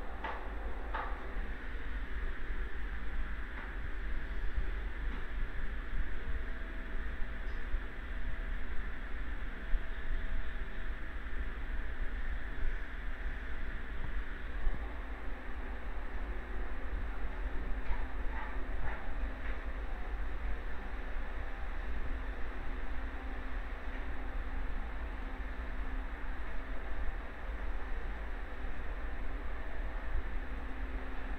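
Steady background noise: a constant low rumble with an even hiss over it, and a few faint short sounds about a second in and again past the middle.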